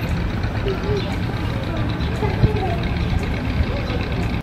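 Steady outdoor background noise with a low rumble and faint, distant voices.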